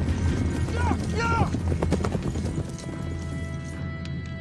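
Horse galloping, a rapid run of hoofbeats, under a dramatic film score, with a short two-part cry about a second in.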